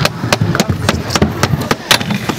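A quick, irregular run of sharp clacks and knocks, about a dozen in two seconds.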